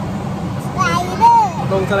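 Excited voices from about a second in, over a steady low rumble of background noise in a large indoor space.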